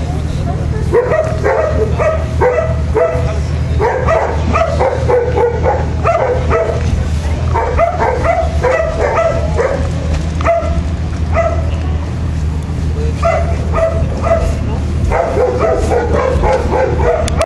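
A dog barking in quick runs of short, high yaps with short pauses between the runs, over a steady low hum.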